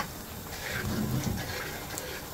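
A spoon stirring thick, bubbling curry sauce in a hot frying pan, a soft, wet, low sound.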